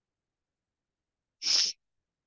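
A single short, hissy breath noise from a person, about a second and a half in and lasting about a third of a second.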